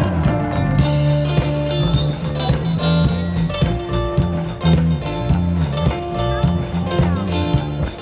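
Live band playing an up-tempo song at full volume, with a heavy steady bass line, regular drum beats, electric guitar and keyboard.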